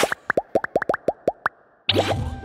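Cartoon sound effect: a quick run of about ten rising-pitch "bloop" pops at an even pace of about eight a second, then a short rising swish near the end.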